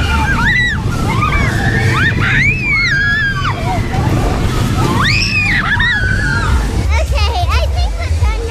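Girls screaming and squealing on a fast amusement ride, in several long rising-and-falling shrieks, with wind rumbling on the on-ride camera's microphone.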